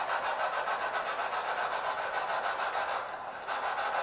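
A steady hiss of static, pulsing at about eight beats a second, briefly dropping away a little after three seconds in.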